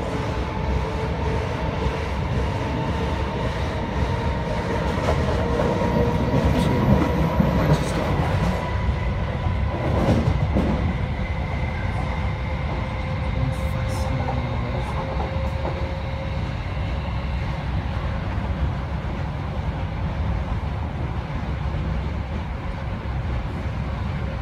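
Class 319 electric multiple unit heard from inside the carriage, running over the junction: steady wheel-on-rail rumble with clickety-clack over the joints and points, and a faint steady whine. There is a brief louder swell about ten seconds in.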